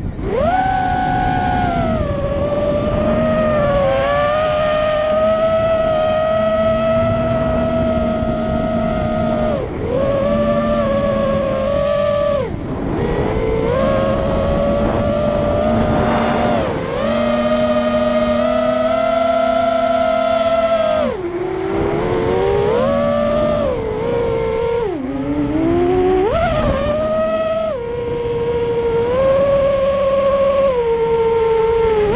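Motors and propellers of an FPV racing quadcopter, heard from its onboard camera: a loud whine whose pitch rises and falls with the throttle. It drops sharply several times where the throttle is chopped, about halfway through and repeatedly in the last third.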